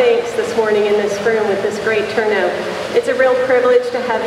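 Speech: a woman talking into a podium microphone.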